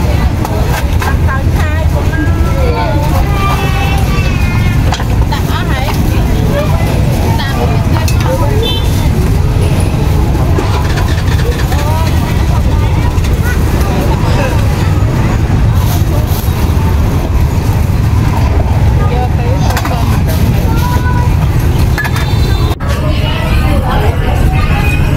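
Steady low rumble of road traffic and engines, with people talking indistinctly over it. Shortly before the end the sound cuts abruptly to the voices of a busy market.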